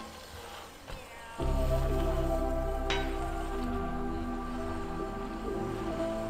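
Background music: soft sustained tones, with a deep bass note coming in about a second and a half in.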